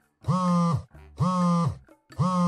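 Phone ringing sound effect for an incoming call: a buzzy tone about half a second long, sounding twice about a second apart.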